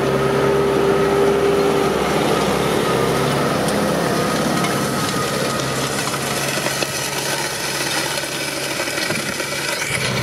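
Tractor diesel engine running steadily under load while pulling a seed drill during sowing. About three seconds in, the steady hum gives way to a rougher, noisier rumble.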